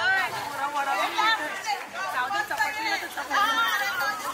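Several women's voices talking over one another in lively chatter.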